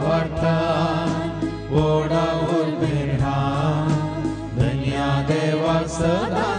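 A woman singing a slow devotional hymn into a microphone, holding and bending long notes over instrumental backing with a steady low bass.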